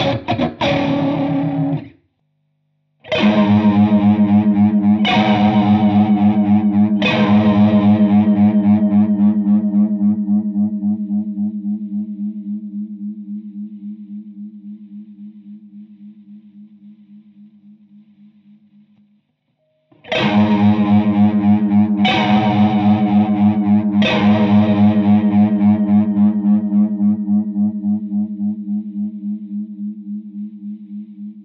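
Overdriven Stratocaster electric guitar through a chorus pedal and tube amp. A strummed passage cuts off about two seconds in. Then three chords struck about two seconds apart ring out long with a steady chorus wobble, and the same three chords are played again from about twenty seconds in, the first pass through a vintage Boss CE-1 Chorus Ensemble and the second through a PastFX Chorus Ensemble mini.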